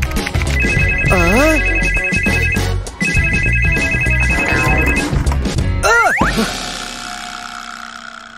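Desk telephone ringing: two rings of about two seconds each with a short pause between, over background music. A short wavering voice sound comes during the first ring, and a quick rising swoop about six seconds in.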